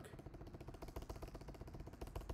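Faint, steady machine hum with a fast, even flutter.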